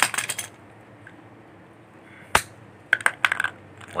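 A metal tool clicking and scraping against the inside of a glued PVC fitting as it is pried loose: a quick run of sharp clicks at the start, a single sharp knock a little past two seconds, and another rapid run of clicks about three seconds in.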